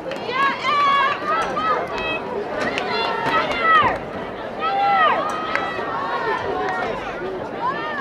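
High voices shouting and calling out over one another, with a few sharp clicks among them.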